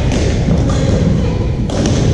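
Badminton play in a large echoing gym: sharp racket hits on a shuttlecock, one at the start and two close together near the end, over thudding footsteps on the court floor and a steady low rumble.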